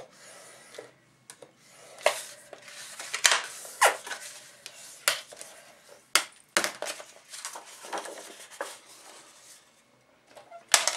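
Stiff white cardstock being folded and handled on a Fiskars plastic paper trimmer: an irregular run of sharp crackles and taps with paper rustling between them.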